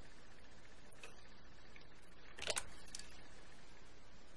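Faint room tone with a few small metallic clicks from jewelry pliers and a jump ring as a chain link is hooked onto it: one light click about a second in, a short cluster of sharper clicks midway through, and a fainter one just after.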